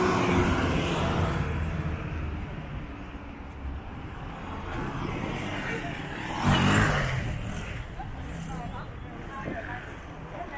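A minibus engine running as it drives past, fading away over the first couple of seconds, then a motorcycle passing close by with a short, loud swell about six and a half seconds in, over general street noise.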